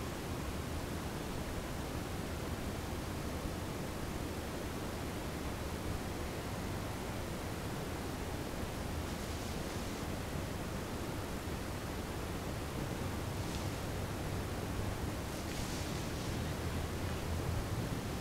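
Steady low hiss of room tone, with a few faint brief rustles in the second half.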